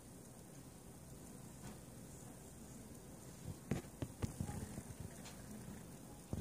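Faint room tone, then a short run of soft clicks and knocks of handling in the second half, the loudest two close together, about half a second apart.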